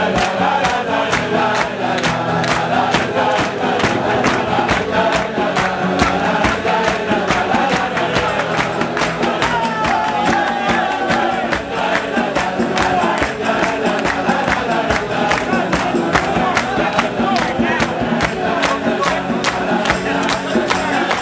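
Acoustic guitars strumming under a large crowd of men singing a niggun together in unison, with steady rhythmic hand clapping.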